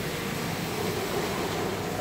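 Steady, even background noise of room ambience, with no distinct events.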